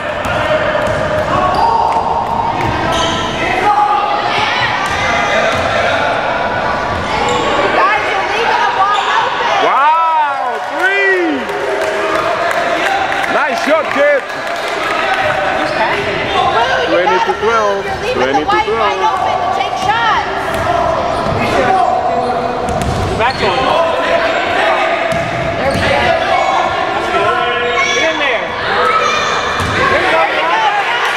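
Basketball game sounds in a gym: a ball dribbling and bouncing on the hardwood floor, several sneaker squeaks, and players' and spectators' voices in the background.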